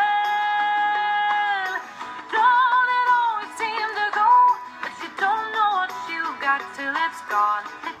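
A young woman singing. She holds one long note for nearly two seconds, then sings shorter phrases that slide in pitch and waver with vibrato.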